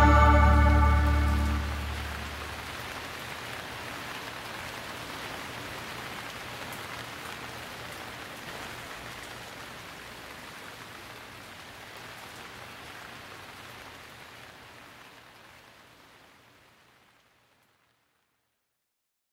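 A held band chord dies away in the first two seconds, leaving a steady hiss of rain, a sound effect that closes the song. The rain fades slowly and is gone shortly before the end.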